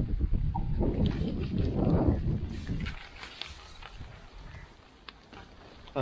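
Nylon tent rainfly rustling and flapping as it is pulled over the tent, loudest in the first three seconds, then quieter handling with a few faint clicks.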